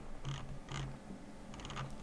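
Computer mouse clicking twice, then a quick run of scroll-wheel ticks near the end.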